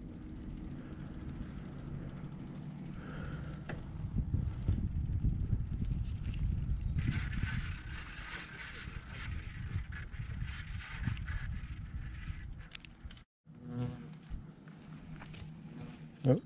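Uneven low rumble of wind and movement on the microphone while travelling along a paved road with children riding bicycles nearby. A thin steady high tone runs underneath, and there is a stretch of buzzing hiss from about seven to twelve seconds in. The sound drops out briefly a little after thirteen seconds.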